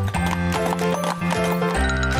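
Background music with an added sound effect of horse hooves clip-clopping.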